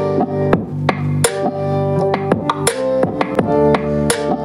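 A song with guitar, bass and sharp drum hits playing loudly through a pair of Nylavee SK400 USB-powered desktop speakers.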